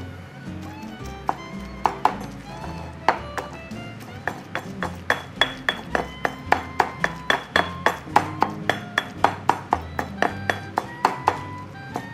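Stone pestle pounding and grinding roasted green chillies in a stone mortar: sharp strikes that come faster in the second half, about three a second, over background music.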